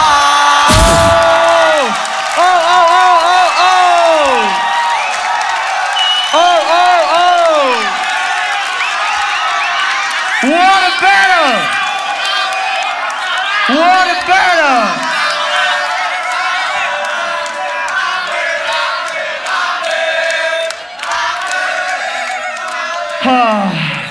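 Human beatboxing through a microphone and PA: a deep bass hit at the start, then repeated voiced glides that rise and fall in pitch, about every three to four seconds, over a cheering crowd.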